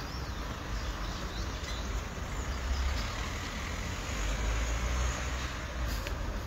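Street traffic: cars driving along a city street, heard as a steady noise with a low rumble underneath.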